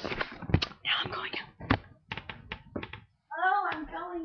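Close talking and whispering into the microphone, broken by many sharp clicks and knocks, then a drawn-out, high voice near the end.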